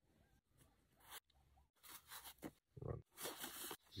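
Mostly near silence, with faint, brief rustles and scrapes of hands handling a leather sandal sole and its leather tie, starting about a second in and coming more often near the end.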